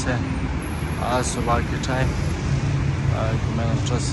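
A person speaking in short phrases over a steady low rumble of street traffic.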